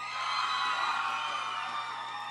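Studio audience cheering and whooping, a steady mass of many held voices that eases off near the end.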